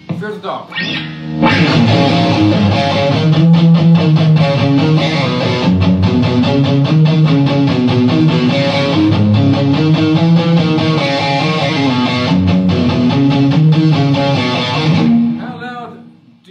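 Solo electric guitar riff on a V-shaped electric guitar: a few quieter picked notes at first, then loud, continuous riffing from about a second and a half in, dying away about a second before the end.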